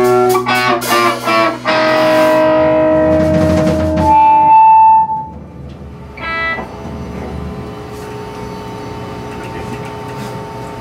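Live rock band with electric guitars ending a song: a few sharp final hits, then a chord ringing out under a loud, high held guitar note, all stopping about five seconds in. Afterwards only a quieter steady background remains, with one short pitched sound.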